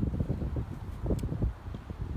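Wind gusting across the microphone: an irregular, buffeting low rumble.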